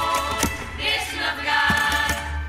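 Women's student tuna chorus singing in unison over plucked guitars and mandolins, double bass and hand drums. Sharp drum hits come about half a second in and twice near the end as the song reaches its close.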